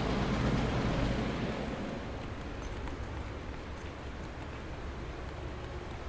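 Steady background noise with a low hum, somewhat louder in the first second or two, with a few faint ticks.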